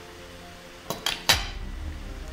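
A metal fork clinking against a plate three times in quick succession about a second in, as it is set down.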